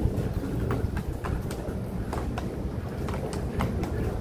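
Footsteps and rolling suitcase wheels on a concrete walkway: a steady low rumble of wheels rolling, with irregular sharp clicks of steps and wheels striking the pavement.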